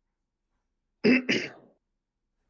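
A man's short two-part vocal noise about a second in, a quick throat clear or chuckle rather than words.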